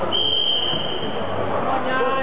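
Echoing voices and shouts of coaches and spectators in a sports hall during a full-contact bout. A steady high tone sounds for about a second near the start.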